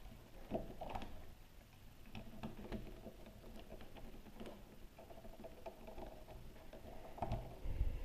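Small plastic clicks and taps as a toy princess figure is handled and fitted onto the saddle of a plastic winged horse toy, with a louder bump near the end.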